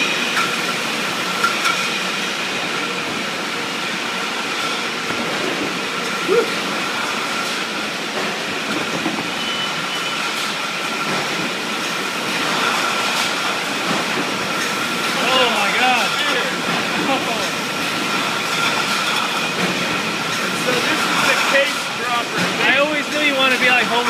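Steady din of a brewery bottling and packaging line, with conveyors and machinery running and a constant high whine over the noise. Indistinct voices come in about two-thirds of the way through and again near the end.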